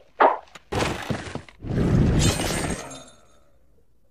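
Crashing and shattering, like breaking glass, in a few noisy bursts. The loudest comes about two seconds in, and they die away near the end.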